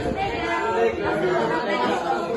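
A group of teenage students' voices together, unaccompanied, going through the words of a song in chorus with no instruments.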